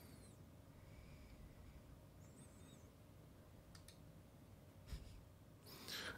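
Near silence: room tone, with a few faint computer-mouse clicks in the second half.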